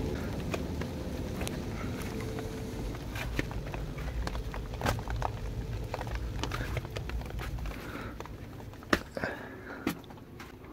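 Footsteps on bare earth as someone walks down into a dugout, with handling rumble and scattered light ticks of rain falling. The rumble fades out near the end.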